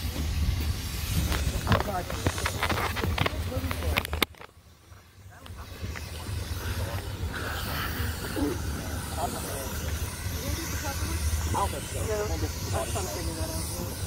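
Outdoor ambience of a group walking: a low, uneven rumble of wind on the microphone and a steady hiss, with faint voices of people nearby. The sound drops out briefly a little over four seconds in.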